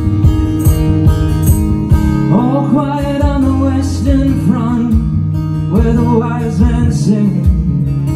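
Acoustic guitar strummed steadily, with a man's voice singing over it from about two seconds in.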